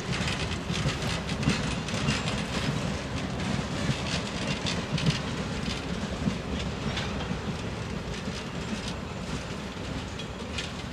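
Passenger coaches rolling slowly past, their steel wheels clicking and knocking irregularly over the rails, with a low rumble underneath.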